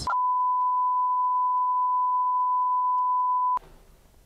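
Broadcast test tone played with a colour-bar 'please stand by' screen, the signal of an interrupted transmission: one steady, high, unwavering beep held for about three and a half seconds, then cut off suddenly.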